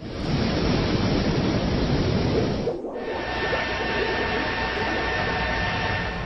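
Power-station sound effect from an educational animation: a loud, steady rushing noise with a low rumble that starts abruptly. About three seconds in it breaks briefly, then goes on with faint steady whining tones.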